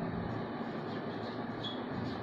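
Marker pen writing on a whiteboard: soft scratching strokes over a steady background hiss, with a brief high squeak near the end.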